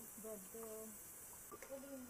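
Faint, indistinct talking among a few people, the words not made out, over a steady high hiss.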